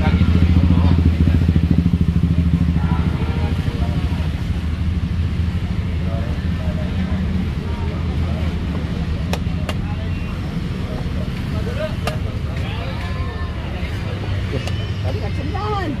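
A small engine running steadily nearby, a low hum with a fast pulse, loudest in the first few seconds. A few sharp clicks of chess pieces being set down on a wooden board come in over it.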